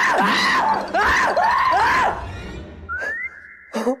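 A young man's high-pitched shrieking laughter, about five squeals in a row, each rising and falling in pitch. It is followed by a briefly held high tone and a short scream right at the end.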